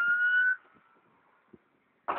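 Emergency vehicle siren wailing, its pitch rising slowly, cutting off suddenly about half a second in.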